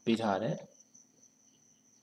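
A brief burst of a man's speech, then a faint, steady, high-pitched whine with a low hum beneath it.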